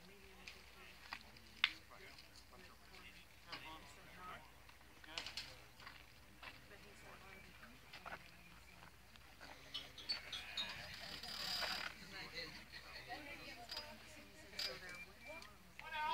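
Faint, distant voices and chatter from players and spectators around a baseball field, with a few sharp clicks, the sharpest about a second and a half in, and a brief stretch of noisier murmur near the middle.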